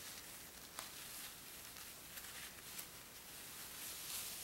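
Faint rustling of a necktie's fabric being pulled through a knot by hand, with a couple of faint ticks.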